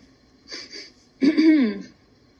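A person clearing their throat: a short breathy rasp about half a second in, then a louder voiced "ahem" lasting more than half a second.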